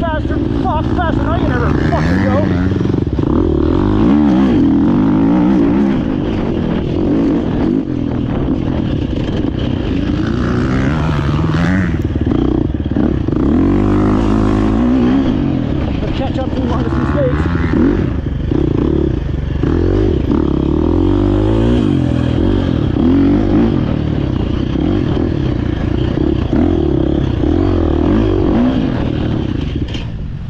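GasGas EC350F single-cylinder four-stroke enduro engine under way, its revs rising and falling again and again with the throttle through turns and short straights.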